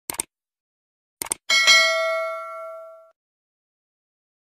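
Subscribe-button animation sound effect: two quick mouse clicks, then two more about a second in, followed by a bright bell chime that rings out for about a second and a half.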